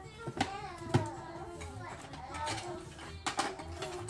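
A young child's voice over background music with guitar, with a few sharp clicks of plastic building blocks being stacked, the loudest about a second in.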